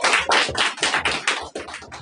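A small audience clapping, the applause thinning to a few scattered claps near the end.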